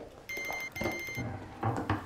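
Telephone ringing with an electronic double ring: two short, high-pitched bursts in quick succession.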